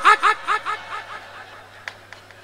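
A man's laugh close to the microphone: a string of short chuckles, each falling in pitch, about seven a second, trailing off within the first second.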